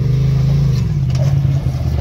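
Polaris RZR side-by-side's engine running under throttle as it climbs down off a boulder, its pitch sagging briefly about a second in and rising again near the end.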